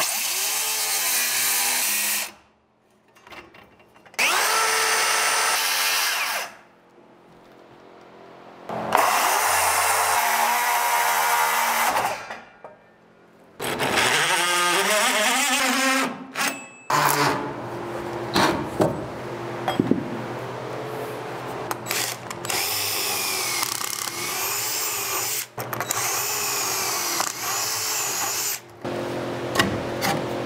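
Cordless power saws cutting through wooden wall studs: four short cuts of about two to three seconds each, separated by brief pauses, then a longer run of about twelve seconds in which the motor pitch wavers up and down.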